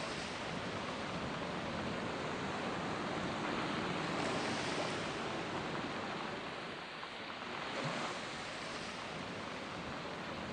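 Ocean waves washing in, a steady rush of surf that swells and fades every few seconds.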